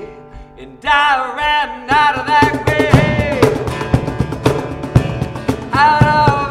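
Acoustic guitar and cajón accompanying a man singing a worship song. The music dips to a brief lull at the start, the voice comes back in about a second in, and steady cajón beats join about two seconds in.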